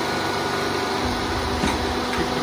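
Engine of a compact crawler-mounted auger drill rig running steadily, a constant mechanical hum with fixed tones.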